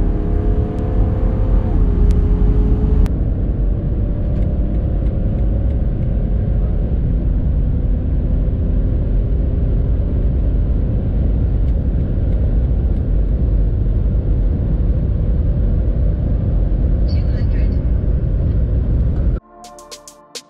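BMW 730d's 3.0-litre straight-six diesel heard from inside the cabin under full-throttle acceleration, with tyre and wind noise, as the car pulls from about 115 to 180 km/h. The engine note climbs and drops at upshifts of the 8-speed automatic, and the sound cuts off suddenly near the end.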